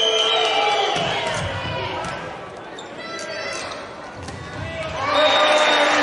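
Indoor volleyball rally: dull thuds of the ball being played, with players shouting, swelling to a loud burst of shouting near the end as the point is won.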